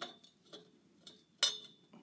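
Light metallic clinks of a notched chromoly steel tube knocking against the chassis tubing as it is fitted into place: one at the start, a faint tick, then a sharper clink with a brief ring about a second and a half in.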